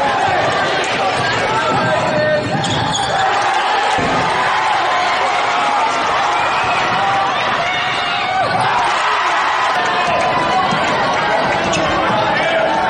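Basketball game sound in a large gymnasium: crowd voices and chatter echoing in the hall, with a basketball being dribbled on the hardwood during a fast break. A short laugh comes about three seconds in.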